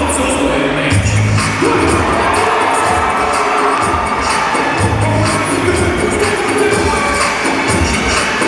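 Dance music with a steady beat and heavy bass, played loud through the stage PA, with an audience cheering and shouting over it.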